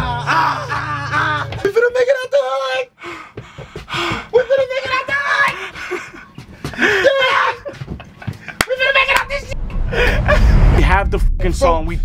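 A drill rap track playing back, a rapped vocal with deep 808 bass that sounds at the start and again near the end, mixed with excited shouting and laughter.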